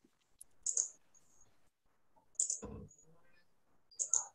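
Two short bursts of computer mouse and keyboard clicking, about a second in and again, louder and with a dull knock, about two and a half seconds in, with near silence between.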